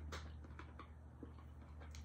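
Quiet room tone with a steady low hum and a few faint clicks.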